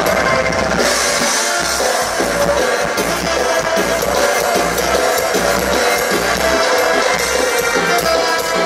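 Live band playing loud, amplified dance music through a PA, with a drum kit keeping a steady beat under bass, electric guitars and keyboards.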